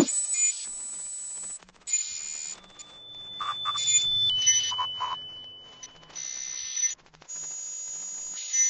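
Electronic outro music and sound effects under a logo animation: spells of bright hiss, and a steady high electronic tone that steps down in pitch a little past four seconds in. A whooshing swell rises and falls through the middle.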